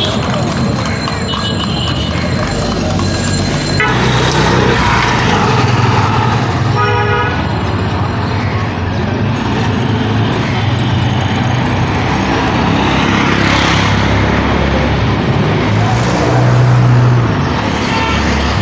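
Busy street traffic noise with a short vehicle horn toot about seven seconds in, and a low engine hum swelling near the end.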